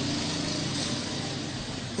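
Steady low background hum with hiss, a constant noise bed under the recording.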